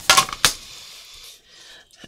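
A few quick clinks in the first half second, then a paintbrush stroking wet watercolor across paper with a soft, scratchy brushing sound.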